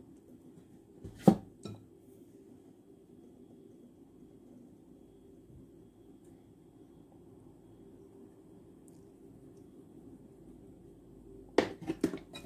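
Two sharp clinks of kitchenware against a glass mixing bowl about a second in, the first much louder, then a long stretch of faint steady low hum as flour is sifted, with a few more clicks near the end.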